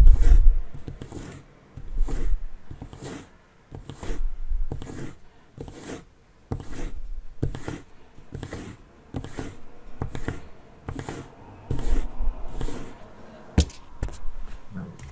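A needle being rubbed over and over in one direction against paper to magnetize it for a homemade compass: a steady series of short scraping strokes, about one and a half a second. A sharp click comes near the end.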